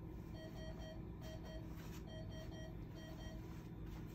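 Electronic beeper sounding about ten short beeps of one steady pitch, in quick groups of two and three, starting just after the start and stopping shortly before the end. Underneath is a steady low hum.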